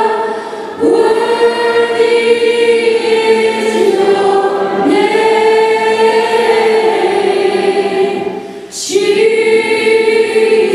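Live worship singing led by a woman on a microphone, with other voices along. It moves in long held notes, with short breaks about a second in, about halfway, and near the end.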